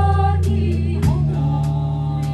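Live band music: several voices sing held notes in pansori-style Korean singing over a steady electric bass line and drums. The sung notes change about a second in, and cymbal strikes tick along at an even pace.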